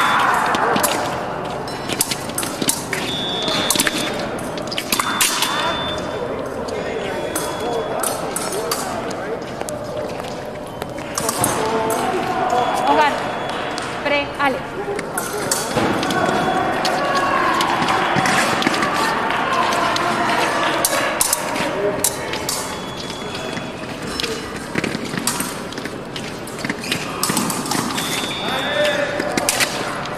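Fencers' shoes squeaking and stepping on a metal piste during an épée bout, with sharp clicks throughout and indistinct voices echoing in a large hall.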